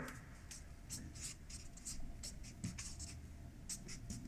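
Felt marker writing on a paper flip-chart pad: a run of short, faint strokes.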